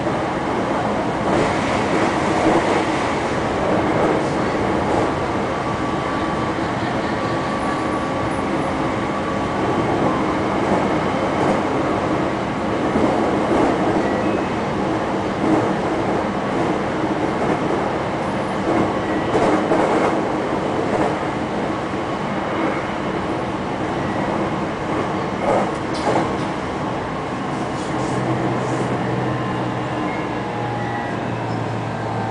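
Six-car electric train running, heard from inside the front car: a steady running rumble with the wheels clacking over rail joints now and then. A low steady hum comes in near the end.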